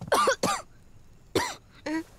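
A man coughing in four short, voiced bursts, two near the start and two in the second half, while eating a pastry with his mouth full.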